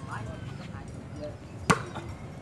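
A single sharp smack of a hand striking a volleyball near the end, with faint voices of players and onlookers around it.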